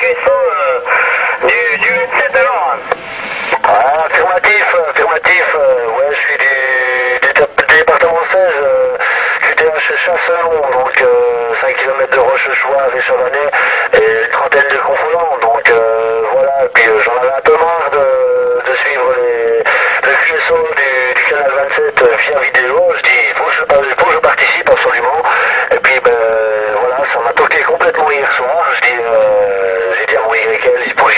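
Voices of CB operators coming through a citizens band radio set on channel 27. They sound thin and narrow, as through a radio speaker, with scattered crackles.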